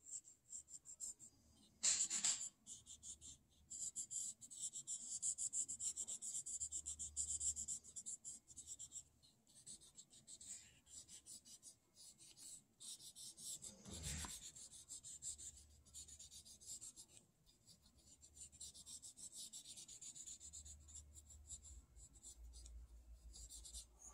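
Coloured pencil shading on paper: faint, irregular scratchy strokes of the lead across a small stack of sheets, with a brief louder stroke about two seconds in and another about halfway through.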